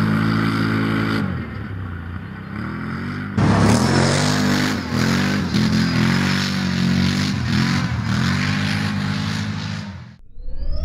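Can-Am Renegade 1000 quad's V-twin engine revving hard, its pitch rising and falling again and again as the throttle is worked over the dirt. The sound drops back about a second in, comes in suddenly louder and harsher about three and a half seconds in, and fades out at the end.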